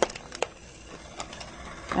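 Plastic halves of a light-up toy ball being twisted shut, giving a few small clicks as the shell locks together.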